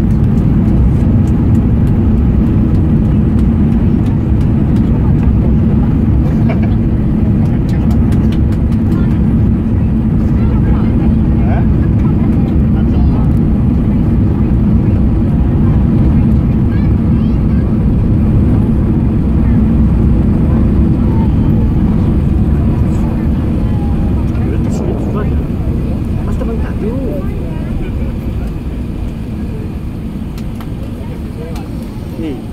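Airbus A380 on its landing rollout, heard from inside the cabin: a loud, steady low roar of engines and runway rumble that gradually fades over the last several seconds as the aircraft slows.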